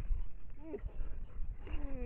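An animal calling on a trail camera's microphone: a short rising-then-falling cry about half a second in, then a longer cry that falls in pitch near the end, over a low rumble.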